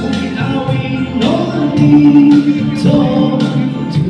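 A man singing a Malay pop ballad into a handheld microphone over backing music with a steady beat, holding one long note about midway.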